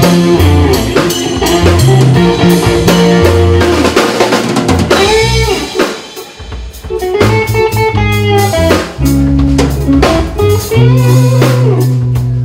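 Live rock band playing an instrumental passage: a Stratocaster-style electric guitar over bass guitar, drum kit and electric keyboard. The band drops out briefly about halfway through, then comes back in together.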